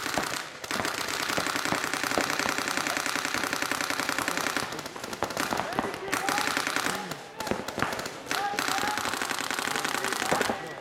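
Paintball markers firing in long rapid streams, many shots a second, with short breaks about five seconds in and again around seven seconds.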